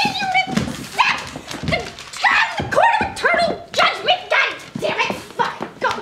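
A person's voice making a run of short, wordless pitched cries, about two or three a second, each rising and then falling in pitch.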